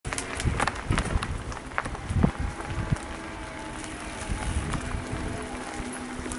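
Mountain bike jolting and rattling over a rough dirt trail, with a run of sharp knocks in the first three seconds, then a steadier rolling rumble.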